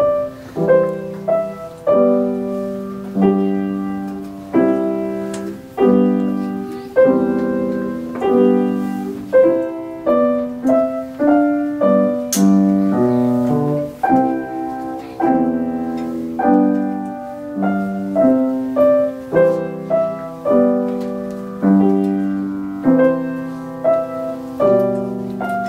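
Steinway grand piano playing a steady, unhurried classical-style piece, with notes and chords in the middle register struck about once or twice a second, each ringing and fading before the next.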